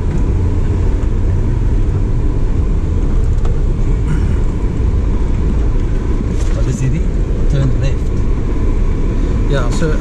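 Steady low rumble of a 4x4's engine and tyres, heard from inside the cab while it drives slowly up a dirt track.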